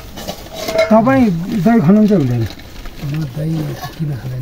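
A man's voice talking in short phrases, with light clinks of steel bowls being handled around it.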